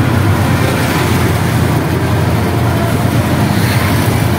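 Auto-rickshaw under way, heard from its passenger seat: a steady mix of engine and road noise, heaviest in the low range, with no letup.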